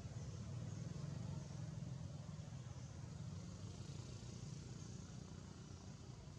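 Faint low rumble that swells over the first second or two and then eases off, with faint high chirps recurring every second or so above it.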